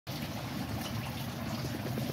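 Water trickling steadily as it runs through the aquaponic system and back into the pond, with a low steady hum underneath.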